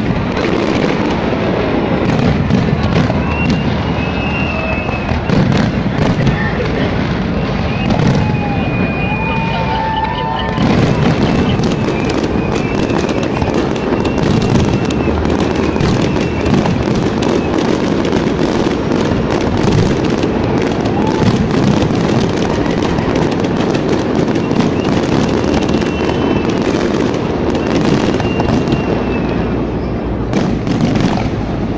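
A large aerial fireworks display going off without pause: a dense, loud run of bangs and crackles from bursting shells, with a few short whistles now and then.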